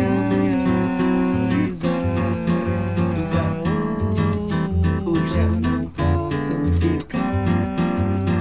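Bossa nova recording: a nylon-string acoustic guitar with a soft, gliding vocal line over a quick, even percussion beat.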